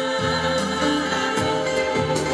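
Female vocal group, several women's voices singing together through microphones and a PA over amplified backing music with a steady bass beat.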